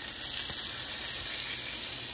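Grenadier fillet searing in a hot pan of butter and rosemary oil: a steady sizzle.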